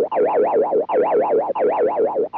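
Cartoon spring 'boing' wobble effect: a warbling tone that wobbles rapidly up and down in pitch, about nine times a second. It comes in three short bursts, each cut by a brief break, as the clown head sways on its spring.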